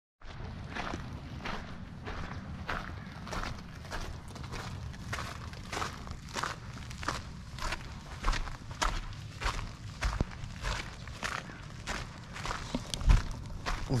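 Footsteps crunching on the loose gravel surfacing of a flat built-up roof, at a steady walking pace of a little under two steps a second.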